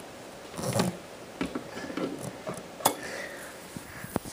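Static sparks from a charged CRT television snapping to a finger: a few sharp clicks, the sharpest about three seconds in, with a duller thump a little under a second in and faint handling rustle.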